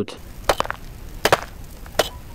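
Rock being struck: a few sharp, separate knocks about a second apart, one of them a quick double.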